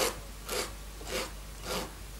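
A cork being rubbed on a sheet of sandpaper to shape it into a cone. There are four short scratchy strokes, about half a second apart.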